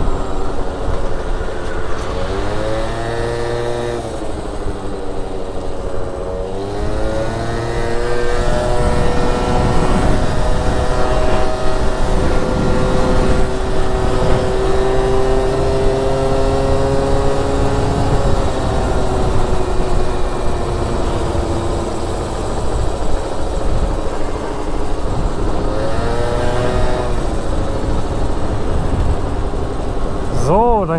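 Gilera Stalker 50cc two-stroke scooter engine under way: its buzz climbs in pitch as the scooter pulls away twice in the first eight seconds, then holds a steady drone at cruising speed and slowly eases off, with a brief rise again near the end, over wind and road noise.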